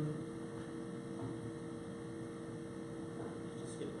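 Steady electrical hum with a couple of constant tones over faint room noise.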